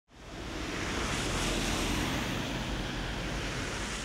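Steady rushing of wind on an outdoor microphone with a low rumble beneath, fading in over the first half second.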